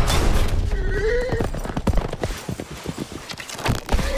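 A horse whinnies, a wavering call about half a second to a second and a half in, followed by a run of irregular hoofbeats.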